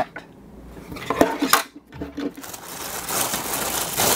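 A couple of sharp clicks from the plastic camera being handled and set down on a tabletop, then a clear plastic bag crinkling, louder over the last second and a half, as the power adapter cord is handled in it.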